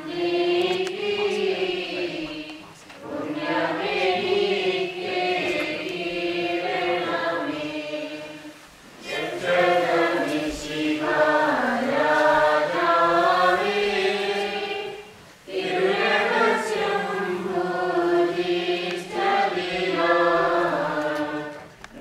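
A choir singing a liturgical hymn of the Syriac Orthodox-rite Qurbono, in long melodic phrases with brief pauses about 3, 9 and 15 seconds in.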